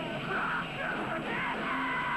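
Live nu-metal band playing loud distorted rock with yelled vocals. About a second and a half in, a single steady high guitar note sets in and holds.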